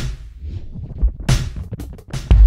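Electronic whoosh sample triggered by drumstick strikes on a snare drum's rim through a Sensory Percussion sensor. Each hit sounds at a different pitch with random delay echoes, set by two LFOs. One loud whoosh comes about a second in and a smaller one near the end.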